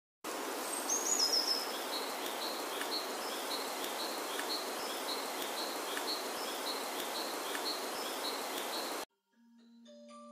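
Outdoor nature ambience: a steady hiss with a high chirp repeated about twice a second and a brighter descending call about a second in. It cuts off suddenly near nine seconds, and soft mallet-instrument notes of music begin just after.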